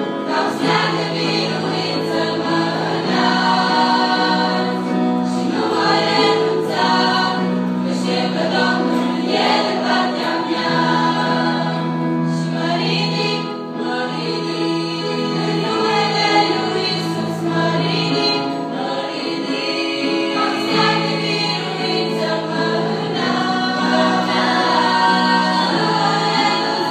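A girls' choir singing a Christian song in several voices, with steady held low notes from instruments beneath them.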